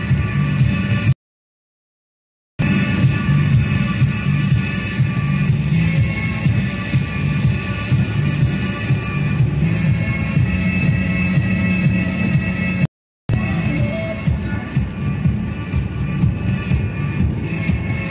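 Electronic music with a steady beat playing on the car radio. It cuts out to complete silence twice: for about a second and a half near the start, and briefly about thirteen seconds in.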